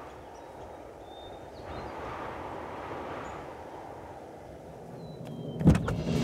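A soft, steady background hiss swells a little in the middle, then a car door opens with a single sharp, loud clunk near the end.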